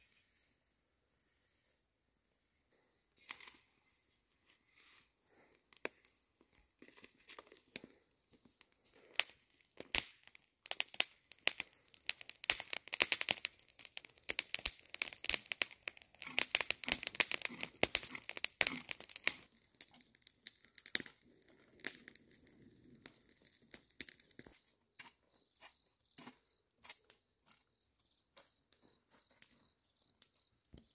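Dry plants and weeds rustling, crinkling and tearing as they are pulled and handled by hand, a dense run of irregular crackles that thickens in the middle and thins out near the end.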